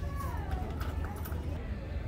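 A voice gliding down in pitch near the start, over a steady low rumble of background noise.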